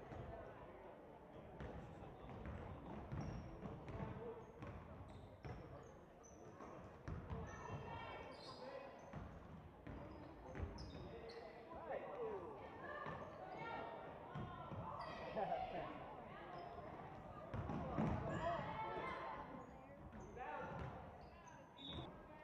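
Basketball being dribbled and bounced on a hardwood gym floor during play, with players and spectators calling out, the voices busier from about halfway in.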